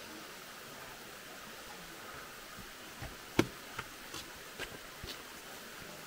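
Faint steady outdoor background hiss, with a few light clicks and taps about halfway through, the loudest about three and a half seconds in.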